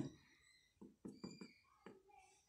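Near silence: room tone with a few faint, short taps in the second half.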